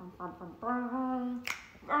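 A woman humming a wordless tune in held notes, with a single finger snap about a second and a half in.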